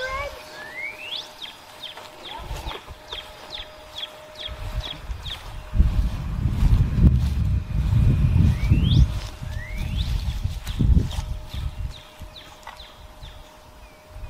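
A songbird singing two phrases, each a rising whistle followed by a quick run of short falling notes, about four a second. In the middle, a louder low rumble on the microphone partly covers it.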